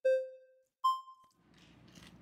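Two short electronic beeps just under a second apart, the second higher-pitched, each fading quickly: a transition sound effect accompanying an on-screen number graphic. Faint room noise follows.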